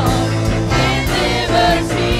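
Live gospel worship song: a small group of singers on microphones singing together over instrumental accompaniment with a steady beat.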